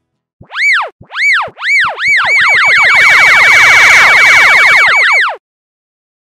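Electronic cartoon sound effect: a run of tones that each rise and then fall in pitch. The first three are spaced about half a second apart, then they repeat fast and overlap for about three seconds before cutting off suddenly.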